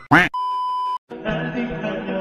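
A short loud swooping sound effect, then a single steady electronic beep lasting under a second, cut off abruptly; music starts just after.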